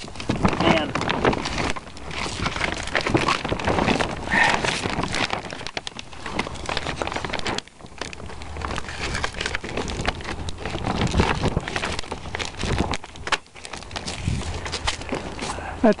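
Polyethylene plastic sheeting rustling and crinkling as it is handled and worked along a PVC pipe, in a run of irregular crackles.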